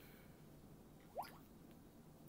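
Near silence: room tone, broken once about a second in by a brief, faint rising blip.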